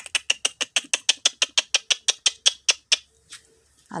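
A caged green parrot giving a fast run of short, sharp calls, about seven a second, which slows slightly and stops about three seconds in.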